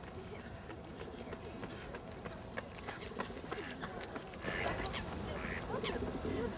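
Lakeside park ambience: faint distant voices with short waterbird calls and clicks, getting busier about four and a half seconds in.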